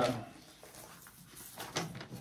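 Soft rustling and sliding of a vinyl LP and its paper inner sleeve being handled with cotton gloves, with a few faint scrapes about a second in and near the end.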